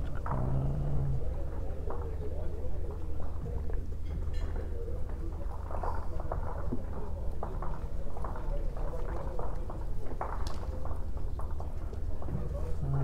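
Indoor bowls hall background: a steady low hum under a murmur of voices from around the hall, with a brief man's voice at the very start and one sharp click near the end.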